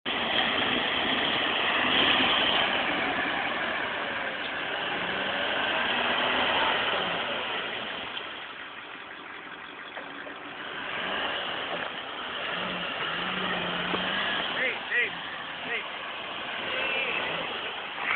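Vehicle engine running, its loudness swelling and easing over several seconds as the revs go up and down, with voices faintly in the background.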